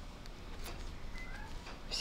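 Faint light clicks of metal knitting needles as knit stitches are worked, with a brief faint high-pitched call a little past halfway through.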